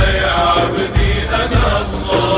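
Arabic devotional song (nasheed) in praise of the Prophet Muhammad: voices singing a wavering melody over a few heavy low drum beats.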